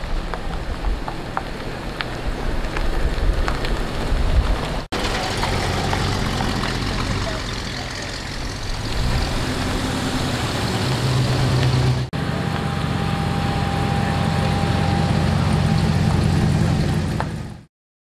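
Classic car engines running at low speed as the cars roll slowly along a gravel lane, among them a 1964 Ford Galaxie and a 1957 Chevrolet, with people talking in the background. The sound comes in three stretches split by sudden cuts about 5 and 12 seconds in, the engine note deeper and steadier in the last one.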